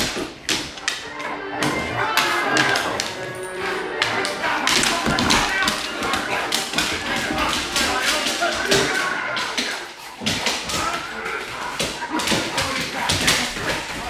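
A cane corso and a pit bull play-wrestling on a hardwood floor: rapid clicks of their claws on the wood and thuds of paws and bodies, going on almost without a break.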